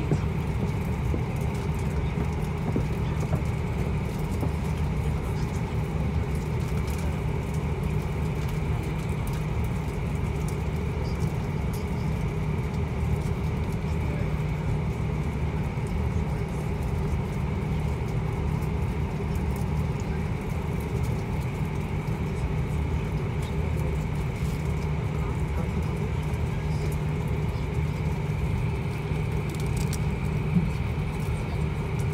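Cabin noise inside an Airbus A340-500 taxiing: its four Rolls-Royce Trent 500 engines running at low taxi power with the airframe's ground rumble, a steady low hum with a few steady tones over it.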